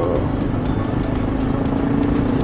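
Honda NX650 Dominator's single-cylinder engine running at a steady cruising speed, heard through a helmet microphone as one even hum over road and wind noise.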